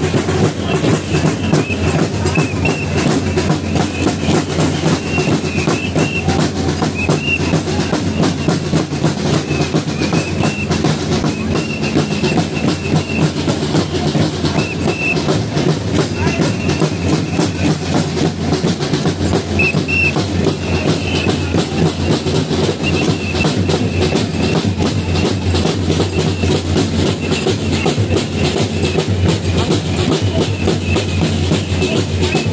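Drums beating a steady, dense rhythm in a marching crowd, with short high tones sounding now and then over it.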